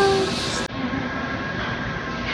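The tail of a sung or musical tone cuts off abruptly under a second in. It gives way to the steady hiss and hum of an NTC 5-axis laser cutting machine cutting 3 mm sheet metal on the shop floor.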